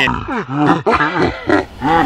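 A voice making a series of short, low grunting sounds that bend up and down in pitch.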